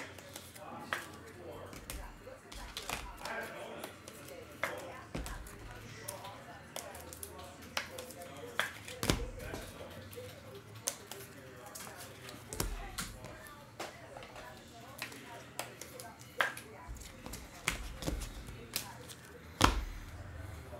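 Scattered light clicks and taps from handling things at a desk, irregular and one or two a second, the sharpest about nine seconds in and just before the end, over faint background talk.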